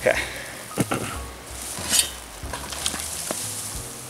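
Metal blade of a long-handled trail tool scraping through root mat and soil and flinging it off the trail tread, broadcasting the dug material. A few separate scrapes, with loose dirt scattering.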